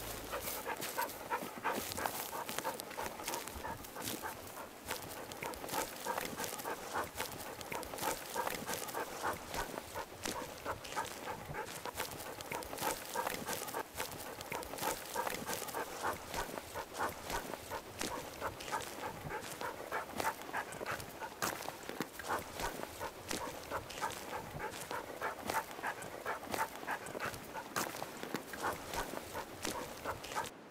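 A dog panting fast and steadily, in quick rhythmic breaths that never let up.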